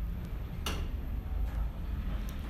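A single sharp click about two-thirds of a second in, over a low steady rumble.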